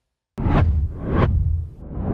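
Whoosh sound effects of an outro logo animation: after a moment of silence, two swooshes swell in quick succession over a low rumble.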